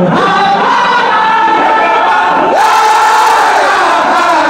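A large crowd of men chanting zikr together, many voices holding and bending a common note loudly. It swells a little louder about two and a half seconds in.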